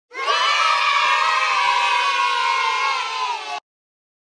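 A long, loud yelled cry held for about three and a half seconds, its pitch sagging slowly toward the end, then cut off abruptly.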